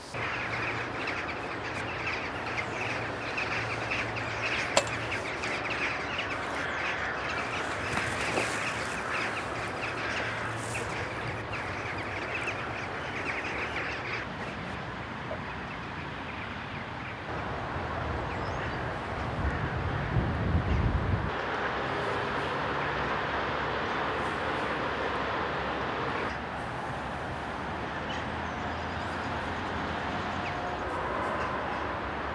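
Dense chatter of many birds calling at once, from the flocks of jackdaws gathered around the harbour, over a steady low hum. A brief low rumble comes about two-thirds of the way through.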